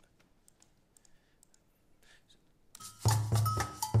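Near silence with a few faint clicks, then, about three seconds in, a recorded batucada percussion rhythm starts loudly, played back from a video.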